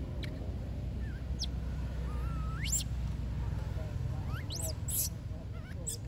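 Baby long-tailed macaque's high, squeaky calls: several short cries that sweep upward in pitch, the longest about halfway through, over a steady low rumble.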